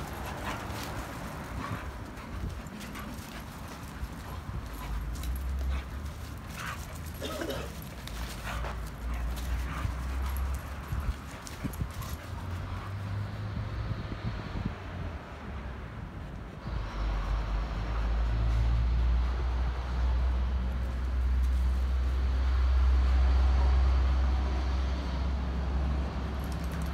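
Two dogs playing, vocalizing now and then. A low steady rumble starts about two-thirds of the way through and continues.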